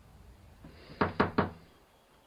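Three quick knocks on a door, about a second in.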